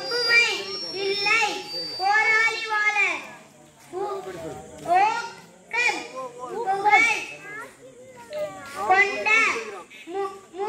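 Children's voices speaking aloud together in short phrases, with brief pauses between them.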